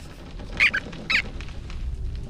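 Two short, high-pitched squeaks from an animated cartoon rodent, about half a second apart.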